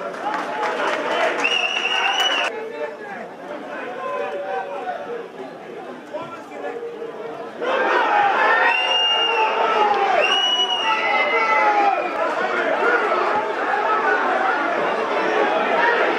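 Players' shouts and calls echoing around the pitch, with a referee's whistle blown once about a second and a half in and twice more, in short blasts, around nine and ten seconds.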